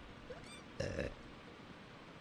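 A short pitched vocal sound lasting about a third of a second, about a second in, over the steady hiss of the recording.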